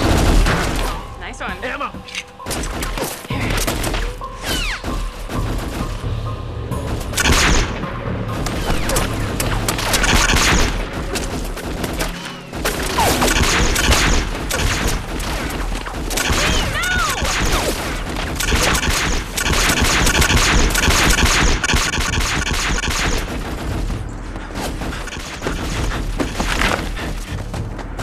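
A sustained exchange of gunfire: many rapid shots and bursts from pistols and automatic weapons, with a few louder blasts.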